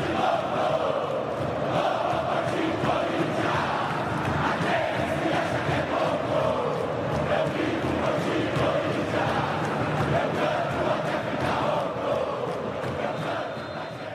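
A large football stadium crowd singing a chant together, many voices holding a steady, wavering tune; it fades out near the end.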